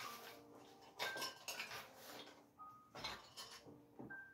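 Small hard objects knocking and clinking on a tabletop as things are handled, a few separate clatters with a brief ring.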